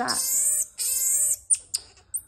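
Common marmoset giving two high-pitched trilling calls, about half a second each, as she tries to intimidate a stranger, followed by two short clicks near the end.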